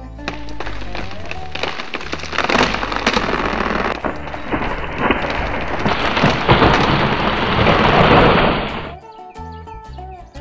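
A Douglas fir falling after being wedged over: a growing rush of cracking wood and snapping branches that is loudest just before it cuts off suddenly about nine seconds in.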